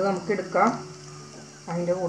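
Hot oil sizzling steadily as fried rice rolls are lifted out of it on a steel slotted spoon, with a voice over it near the start and again near the end.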